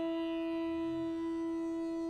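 Bansuri (bamboo transverse flute) holding one long, steady note.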